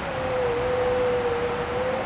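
A single steady tone around the pitch of a hum, drifting slightly lower, held over a low room murmur.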